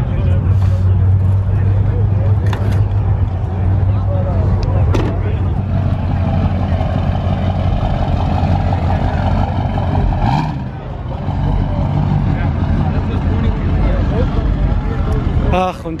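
Engine of a heavily lifted Chevrolet pickup truck running as the truck moves off slowly. It makes a steady low drone that weakens about ten seconds in.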